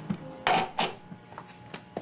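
A few short knocks and scrapes of small objects being handled, the two loudest about half a second in and just under a second in, followed by fainter clicks.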